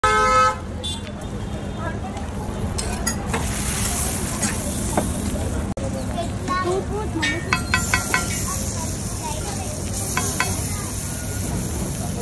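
Busy street ambience of traffic and people's voices, with several short vehicle-horn toots a little past halfway. Underneath is faint sizzling of a flatbread cooking on a large iron griddle. It opens with a brief loud pitched tone.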